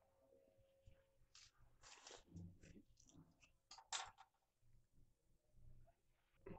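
Near silence with faint kitchen handling noises: scattered soft clicks and rustles, and one sharper click about four seconds in.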